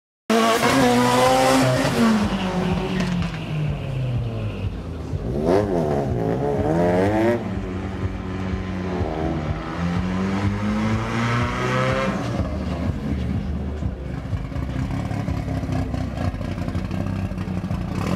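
Car engines revving at a drag strip, rising and falling in pitch several times over the first twelve seconds as cars move past and stage, then settling into a steadier, lower running sound.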